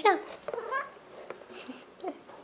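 A domestic cat meowing, a short faint meow about half a second in, followed by a single faint click.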